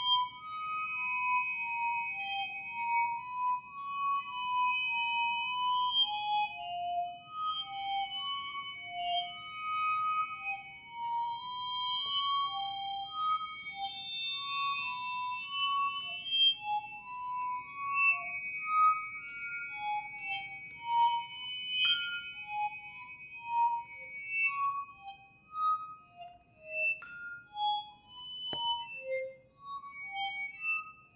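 Percussion quartet playing: a melody of single struck notes on metal-bar mallet instruments over held, high metallic ringing tones, with a few sharper strikes near the end.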